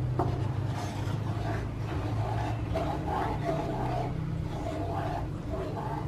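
Wooden spatula stirring and scraping through thick coconut caramel sauce in a nonstick wok, over a steady low hum.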